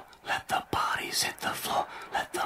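A whispering voice in quick, choppy syllables.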